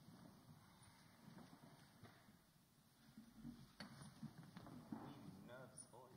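Near silence from a seated audience shifting on their chairs: faint rustling, soft knocks and chair creaks, with a short wavering squeak near the end.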